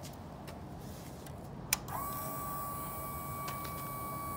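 A click, then a steady high electric whine from about halfway in: the fuel pump of a 2012 Yamaha V Star 950 priming as the ignition is switched on, before the engine is cranked.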